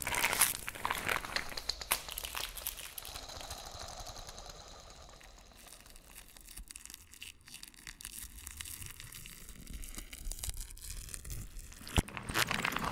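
Acousmatic electroacoustic music: a dense, crackling granulated noise texture that thins out and grows quieter over the first half. It gives way to a faint hiss with a slowly rising filtered sweep, and a loud, harsh noise texture cuts in at the very end.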